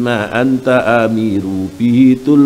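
A man's voice through a microphone, reciting Arabic text in a drawn-out, chant-like intonation with long held notes.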